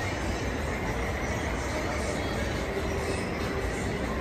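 Steady mechanical rumble and hiss of machinery running, with faint short tones now and then.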